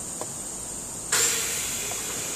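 Part-cooling air on a vacuum-forming machine switching on about a second in: a sudden, steady rush of air with a low hum, over the machine's constant background hiss.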